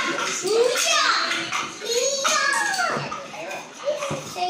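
High-pitched children's voices talking and calling out, with rustling of cardboard and tissue paper as a shoe box is opened.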